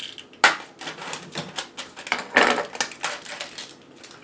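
A spoon stirring and scooping gritty ground white stone in a jar. It makes an irregular run of sharp scrapes and clicks, loudest about half a second in and again around two and a half seconds.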